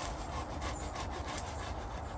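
Pruning handsaw cutting through thick English ivy stems at the base of a tree trunk, in quick, repeated scratchy strokes.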